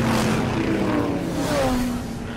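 Cartoon off-road vehicle engine sound effect: a big-wheeled buggy revving hard as it pulls away over rough ground, with a whine that slides down in pitch near the end.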